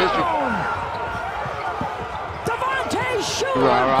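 Basketball shoes squeaking on a hardwood court in a string of short squeals during a scramble for the ball, with voices starting near the end.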